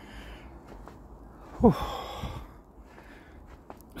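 A man's breathy sighed "whew", one exhale with a steeply falling pitch, about one and a half seconds in, over faint low background noise.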